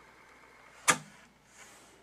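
A single sharp click about a second in, from a soft-touch transport button on a Fisher DD-280 direct-drive cassette deck being pressed, with a faint hiss shortly after.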